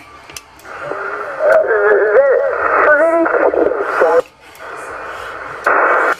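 A weak single-sideband voice transmission on the CB channel 27 calling frequency, heard through a Yaesu FT-450 transceiver's speaker. The speech is thin and narrow and half-buried in static, and it drops away after about four seconds to leave plain hiss. A louder burst of noise comes near the end.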